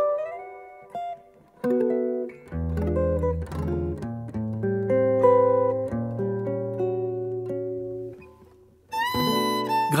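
Archtop jazz guitar played solo in gypsy-jazz style: a few single notes with a slide up, a brief pause, then ringing chords over a steady low bass note. Near the end a sustained violin note comes in.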